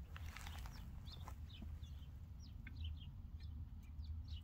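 Faint birds calling in the background: short, high chirps scattered through, over a steady low rumble.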